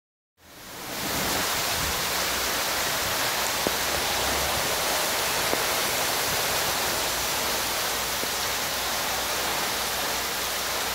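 Heavy rain pouring down, a steady dense hiss that fades in over the first second, with a couple of faint sharp ticks in the middle.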